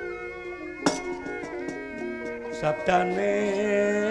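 Javanese gamelan accompanying a wayang kulit performance: sustained ringing metallic tones, with a sharp knock about a second in and a wavering melodic line coming in near the end.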